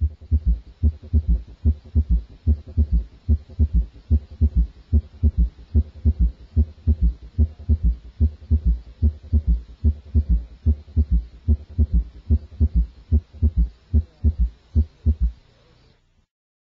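Recorded heart sounds heard through a stethoscope: low, dull thumps repeating steadily, with a third heart sound (S3) added after the first and second sounds. This is a normal finding in a child.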